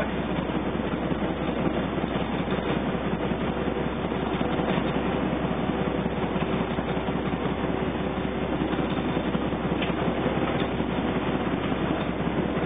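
Wichmann 3ACA three-cylinder two-stroke diesel engine running steadily under way at speed, heard from the wheelhouse.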